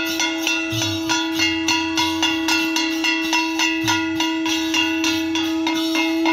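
Ritual puja percussion: a drum and clanging metal beaten in a quick, steady rhythm, with one long steady note held over it.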